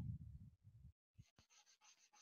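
A smudging stick (paper blending stump) rubbing graphite into drawing paper: a faint, low scuffing through about the first second, then near silence.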